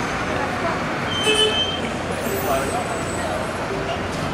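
Busy city-street background: road traffic and buses running past, with indistinct voices of passers-by. A brief high-pitched tone sounds about a second and a half in.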